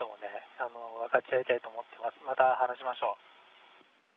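Speech over a narrow-band radio link, stopping about three seconds in and leaving a faint line hiss.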